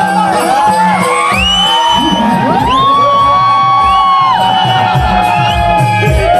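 Live accompaniment music for a Naman folk play: a steady drum beat under long, sliding high melody notes.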